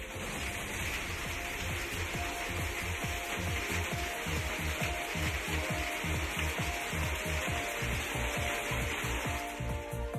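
Heavy rain pouring onto a concrete yard, a steady hiss, with low rumbling buffets on the microphone.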